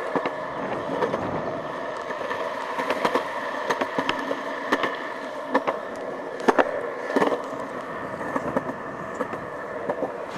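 Skateboard wheels rolling along a concrete sidewalk: a steady rolling rumble broken by frequent irregular sharp clicks.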